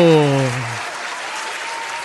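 Applause: steady clapping that carries on after a man's drawn-out call falls in pitch and dies away in the first second.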